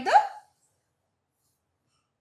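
A single spoken word cut off in the first half second, then complete silence.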